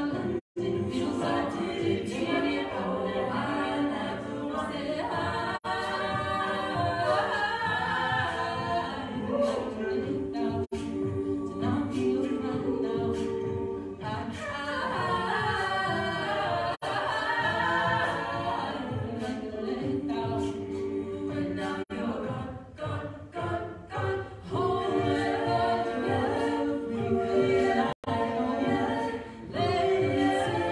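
Co-ed a cappella group singing a pop song in close harmony, a lead soloist over the backing voices. The sound drops out for a split second a few times.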